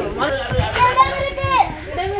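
A group of people's voices calling out and chanting together in a playful game, with one long, high call held from about a second in. A few low thumps sound under the voices.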